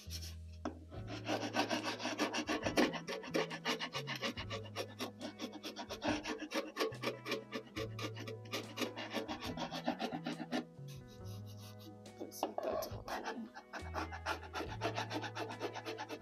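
Rapid, repeated strokes of a metal scraper blade across a wooden table part, scraping off old glue, with brief pauses about two-thirds of the way through. Background music with a bass line runs underneath.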